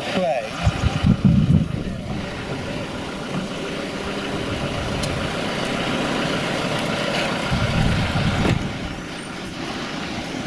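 A motor vehicle running on the road, with low rumbles about a second in and again near the end, and indistinct voices.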